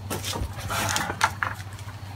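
Rustling and a few light knocks from a handheld camera being moved, over a steady low hum.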